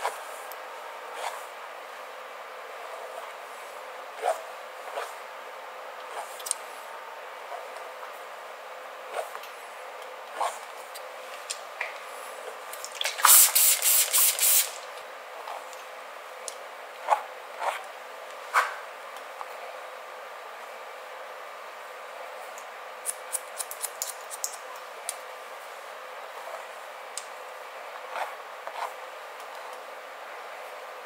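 Haircut sounds on wet hair: scattered clicks of a comb and scissor blades working through the hair, with a cluster of quick snips about three-quarters of the way through. Nearly halfway in, the loudest sound: a run of about eight quick hissing sprays from a water spray bottle misting the hair.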